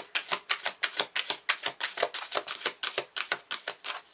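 Oracle card deck being shuffled by hand: the cards slap together in a fast, even run of crisp clicks, about seven a second, which stops at the end.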